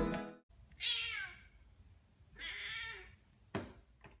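A domestic cat meowing twice, each call about half a second long, the second coming about a second and a half after the first, after closing music cuts off. A single sharp tap near the end.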